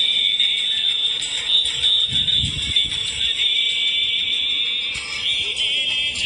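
Dance music playing, dominated by a shrill, steady high-pitched tone that wavers briefly a few times.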